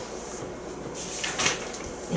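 A cloth eraser wiping marker writing off a board: soft rubbing strokes, the strongest about a second and a half in.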